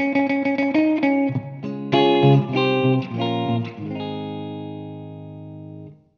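Gibson Les Paul Goldtop electric guitar on its middle pickup position, both humbuckers on, through a Friedman Brown Eye tube amp, playing short R&B-style picked notes and chord stabs. About four seconds in it lands on a final chord that rings and fades slowly until it cuts off at the end.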